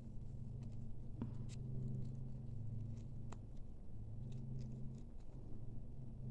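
Faint rustling and a few soft ticks of sewing thread being pulled tight and wrapped around the middle of a gathered satin ribbon bow, over a steady low hum.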